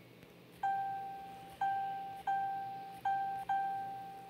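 Smartphone on-screen keyboard key-press sounds while a word is typed: five short beeps of the same pitch, one per key tapped, each starting sharply and fading out.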